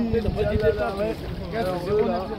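Indistinct voices of people talking nearby, with low wind rumble on the microphone.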